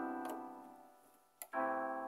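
Piano chords in an instrumental passage: a chord rings and slowly fades, then a short click, and a new chord is struck about one and a half seconds in.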